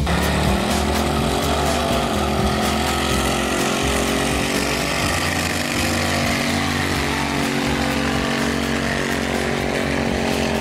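Hot rod engine held at high, steady revs during a burnout on a drag strip, with a continuous hiss of spinning tires.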